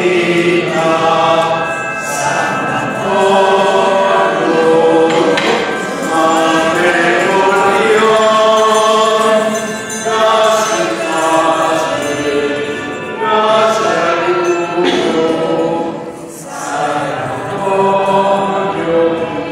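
A crowd of voices singing a slow religious hymn together, in long held notes, with a short break between phrases near the end.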